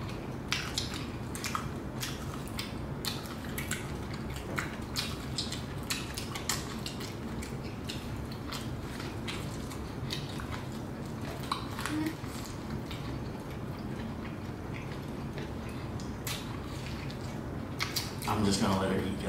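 Close-miked eating of corn on the cob: irregular crisp bites, clicks and mouth smacks, a few a second, over a steady low hum.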